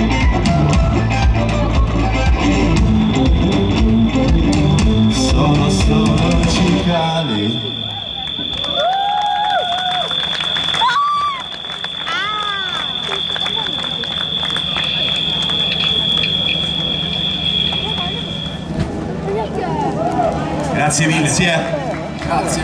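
Rock band of electric guitars, bass and drums finishing a song with a final loud chord about seven seconds in, followed by audience cheering, shouts and applause over a steady amplifier hum. A high steady ringing tone holds through most of the applause and stops near the end.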